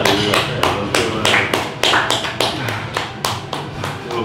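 One person clapping hands rapidly and steadily, about five claps a second, with faint music underneath.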